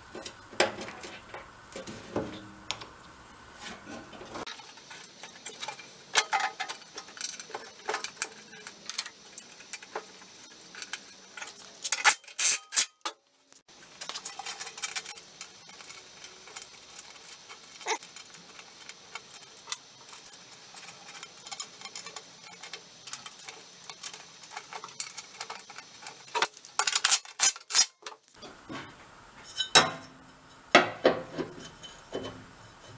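Loose metal parts and tools clinking and clanking during hand work on an Ariens snowblower's steel auger housing, with louder bursts of clanks about twelve seconds in and again near the end.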